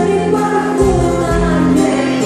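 Live band playing a Greek popular song, with singing over the accompaniment.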